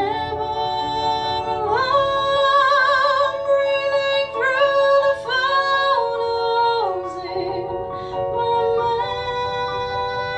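A woman singing live, holding long notes that slide between pitches and waver with vibrato, over sustained keyboard chords.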